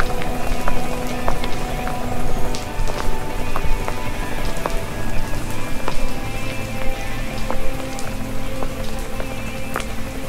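Rain falling, with a steady hiss and scattered individual drops ticking irregularly on hard wet surfaces.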